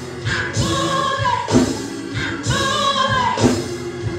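A woman singing a gospel song into a handheld microphone, holding long, wavering notes over a beat that falls about once a second.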